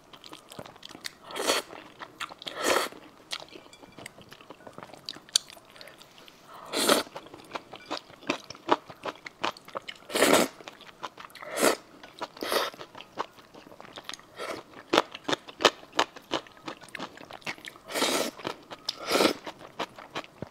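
Close-miked eating of noodles in soup: about seven long, loud slurps as mouthfuls of noodles are sucked in, with wet chewing and mouth clicks between them.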